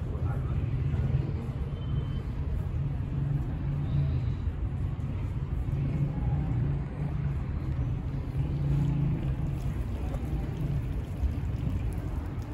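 Steady low rumble of outdoor background noise, with no clear single event.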